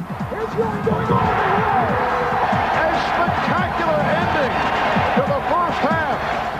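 Basketball arena crowd shouting and cheering, loud and steady, with many voices overlapping as a play unfolds on court.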